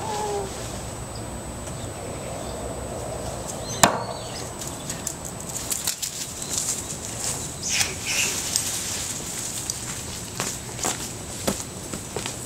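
A bearded axe with a hickory handle strikes a wooden stump target and sticks in it: one sharp impact about four seconds in. Scattered light crackles and rustles follow.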